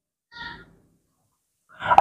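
One brief squeak of a marker pen drawn across a whiteboard, a short high note about a third of a second in.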